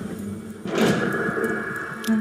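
A single whoosh-like thud, likely a trailer sound-effect hit, comes about two-thirds of a second in, over steady sustained tones from the soundtrack.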